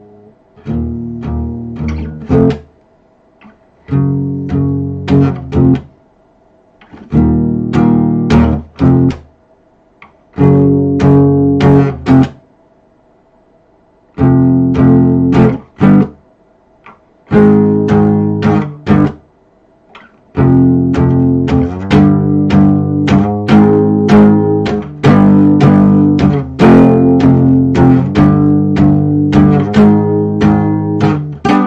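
Nylon-string cutaway acoustic guitar played with strummed and plucked chords, in short phrases of about two seconds broken by pauses, then played without a break from about two-thirds of the way in.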